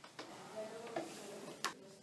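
A few soft clicks and taps from a deck of playing cards being handled, about three in two seconds.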